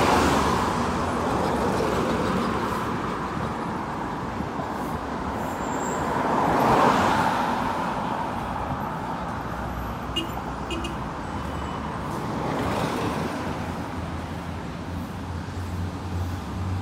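Road traffic passing on a city road. Vehicles swell past close by three times: a minibus at the start, a louder pass about seven seconds in, and another near thirteen seconds, over a steady rumble of traffic.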